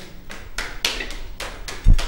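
A few sharp taps and knocks, then one heavy, deep thump just before the end.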